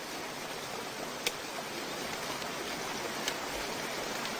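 Fast mountain river rushing over rocks: a steady wash of water noise, with a small click about a second in.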